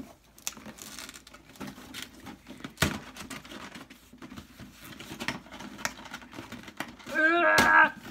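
Cardboard and plastic packaging of a 10-inch Funko Pop box rustling and crinkling as the figure is worked out of it, with scattered small clicks and a sharp knock about three seconds in. A short vocal exclamation near the end.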